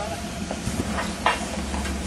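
Jeep Wrangler's engine running low and steady as it crawls over rocks, with a few short knocks and crunches from tyres and underbody on rock, the sharpest just past the middle.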